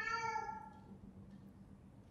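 A cat meowing once, a single meow of about a second, faint beneath the lecture's room sound.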